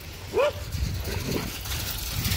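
A dog gives one short, rising bark about half a second in, among several dogs playing together.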